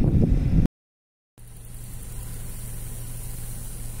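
Cicadas singing in a steady, high-pitched chorus over a low steady hum. It follows a moment of low rumbling wind and road noise that cuts off suddenly near the start.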